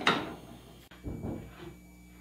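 Wooden spoon stirring shredded beef filling in a frying pan: one sharp knock of the spoon against the pan at the start, then faint scraping.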